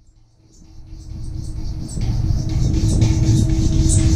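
Large bossed temple gong made to hum by rubbing its central boss with the palms: a low drone that swells up gradually from near silence, with a steady tone above it, loud by about two seconds in.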